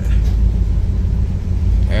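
Steady low rumble of a vehicle, with no other event standing out.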